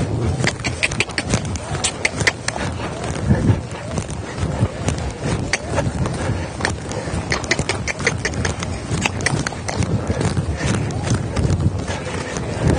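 A horse trotting under a rider on soft arena footing: a run of hoofbeats with many sharp clicks mixed in.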